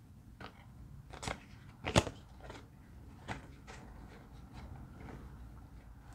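Tarot cards being picked up from the spread and gathered in the hands: a handful of light card taps and flicks, the sharpest about two seconds in.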